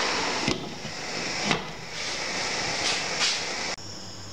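Steady hiss and sizzle from a pan of steamed vegetable pulao as its lid is lifted and steam pours out, with a couple of light knocks about half a second and a second and a half in. The sound cuts off near the end.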